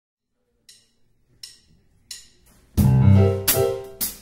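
A live band counting in with three evenly spaced ticks, then coming in together on about the fourth beat: electric keyboard chords over bass and drum kit.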